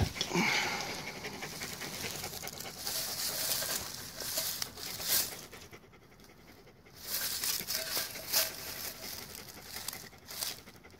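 Panting breaths close to the microphone, with handling and rustling noises and a couple of short knocks.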